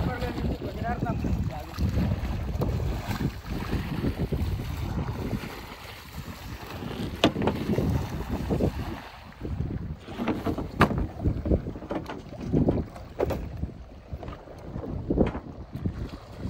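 Water splashing as a bamboo pole is worked as a paddle through choppy sea, with wind buffeting the microphone. A few sharp knocks come in the second half.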